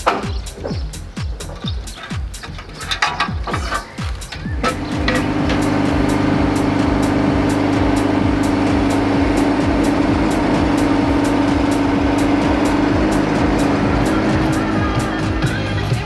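Lorry-mounted hydraulic crane at work: about four and a half seconds in, the lorry's engine and hydraulic pump come up to a steady, loud running hum while the crane lifts and lowers a pallet of stone. The hum shifts slightly in pitch near the end as the load is set down.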